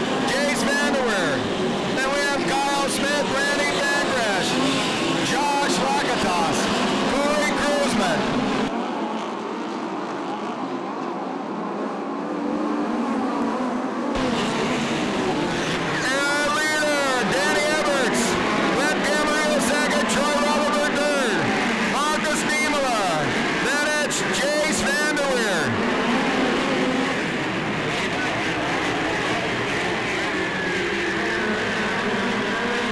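Pack of midget race cars running on a dirt oval. Several engines rise and fall in pitch as the cars rev through the turns and pass by.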